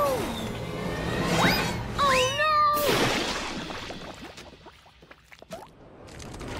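Cartoon soundtrack: a character's long cry that falls away, a rising whoop, then another held cry that drops off as the engine tumbles, followed by a noisy crash about three seconds in that fades out.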